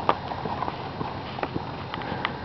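Horse's hooves at a walk on arena dirt: irregular footfalls with a few sharp clicks, the loudest just after the start.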